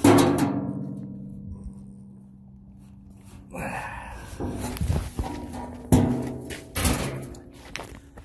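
A single deep drum-like hit that rings on for about three seconds, followed by a noisier stretch with a couple of sharp knocks.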